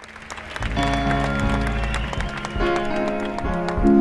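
Live band music fading in from silence at the opening of a song: an instrumental introduction with a piano and sustained notes. It reaches full loudness within about a second.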